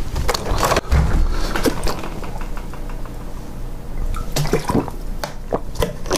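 Plastic water bottle taken from a refrigerator and handled, with scattered short clicks and knocks.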